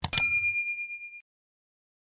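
Notification-bell sound effect: a mouse click, then a bright bell ding that rings out and fades within about a second.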